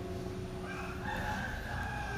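The last strummed acoustic guitar chord dies away. Then a drawn-out animal call sounds for about a second and a half, its pitch falling slightly.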